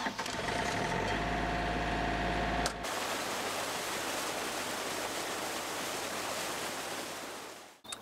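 A trailer-mounted pump unit's engine running steadily. From about three seconds in, muddy water rushes steadily out of a blue layflat discharge hose as the lake is pumped dry, fading out near the end.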